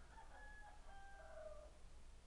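A faint, drawn-out animal call lasting about a second and a half, over a low steady hum.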